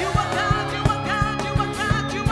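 Live gospel praise song: a woman sings lead while a group of backing singers joins in. Underneath is a steady drum beat of about three thuds a second.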